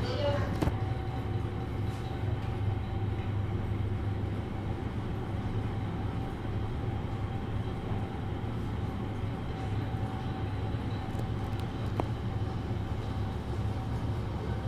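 GoldStar passenger elevator car travelling downward, heard from inside the car: a steady low hum and rumble with a faint steady whine, and a single click near the end.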